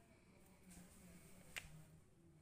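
Near silence: quiet room tone, broken by a single sharp click about a second and a half in.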